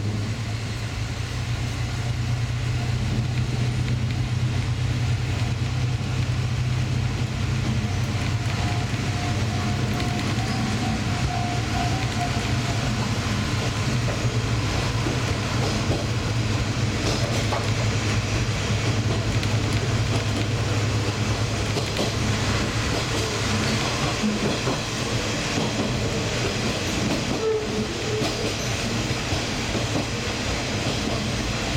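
Diesel train pulling away from a station: the engine's low drone holds steady under power and eases off about two-thirds of the way through as the train coasts, over steady wheel-on-rail running noise.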